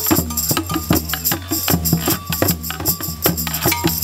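Group percussion jam: a large red drum struck with a mallet, a hand drum, a wooden guiro scraped with a stick, and bells struck with sticks, all playing together in a busy, steady rhythm of closely spaced strokes.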